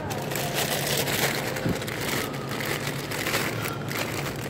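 Plastic produce bags of Roma tomatoes crinkling and rustling as a gloved hand handles them, over a steady low hum.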